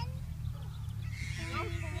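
Wind rumbling on the microphone throughout, and near the end a short, high-pitched voice rising in pitch.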